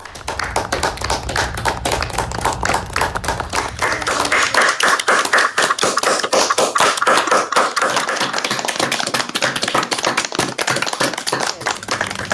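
Applause from many people clapping, recorded separately on home webcams and mixed together into dense, rapid claps. A low hum under the first few seconds drops away about four and a half seconds in.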